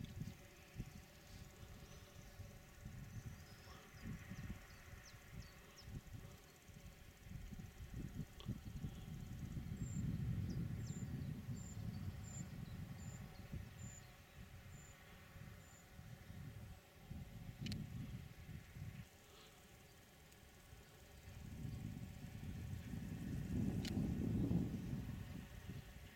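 Wind buffeting the microphone in gusts, a low, uneven rumble that swells about ten seconds in and again near the end. In between, a faint high peeping note repeats about nine times over six seconds.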